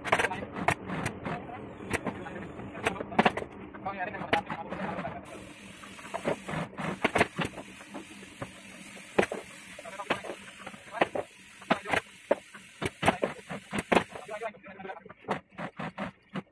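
Workshop sounds at an industrial sewing machine: many sharp clicks and knocks from stitching and handling leatherette chair-cover panels, with a low motor hum and indistinct voices in the first few seconds and a steady hiss through the middle.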